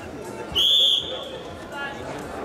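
Referee's whistle: one high, steady blast about half a second long, starting the bout, over the chatter of the arena crowd.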